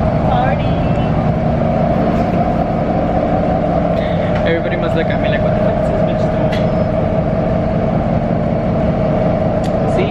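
Steady engine drone and road rumble heard from inside a moving city transit bus, with a constant hum running underneath.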